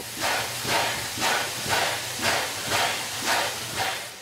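Steam locomotive working slowly, its exhaust chuffing in even steam blasts about twice a second, with steam blowing from the cylinder cocks at the front.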